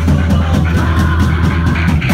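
Punk rock band playing loud and live: electric guitar and a drum kit driving a song, with the cymbals thinning out and then crashing back in right at the end.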